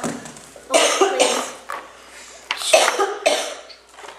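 A person coughing in two short bouts, each of two or three quick coughs, the second bout about two seconds after the first.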